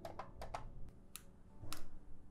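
A quick run of sharp plastic clicks, then two more spaced about half a second apart. They come from the push buttons on a Sonoff 4CH Pro smart switch and its RF remote being pressed while the remote's buttons are paired to the switch channels.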